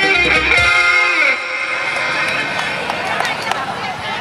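Live band music with guitar that ends about a second in, followed by crowd chatter and voices.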